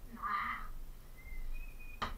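A faint, high-pitched voice calling briefly about half a second in, followed by thin high tones in the second half.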